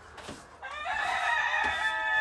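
A rooster crowing: one long call that starts about half a second in and carries on to the end.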